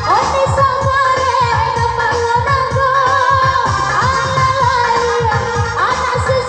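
Minang dendang: a singer's voice holding long, wavering melodic lines over loud music with a fast, steady low beat. This is the pantun singing of a KIM number game.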